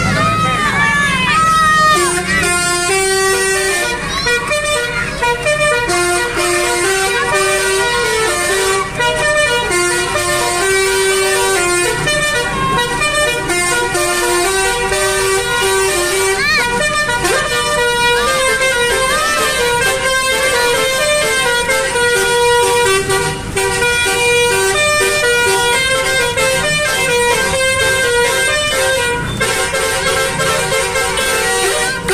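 Basuri telolet multi-tone air horn playing a melody of held notes that step from pitch to pitch, with a few warbling glides in the first two seconds.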